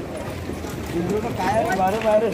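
Men talking close by, with a few light knocks or taps under the voices.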